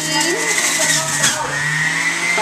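Electric centrifugal juicer motor running with fruit being pushed down its feed chute, a steady hum and whine whose pitch sags briefly about a second and a half in, then climbs back.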